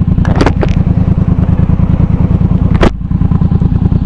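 Yamaha MT-07 parallel-twin engine with an aftermarket Arashi exhaust running at low revs while riding at low speed. A sharp click about three seconds in, with the engine sound dipping briefly.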